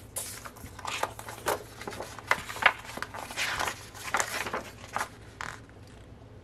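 A folded glossy paper poster being unfolded and handled: irregular rustles and crinkles of stiff paper, dying down near the end.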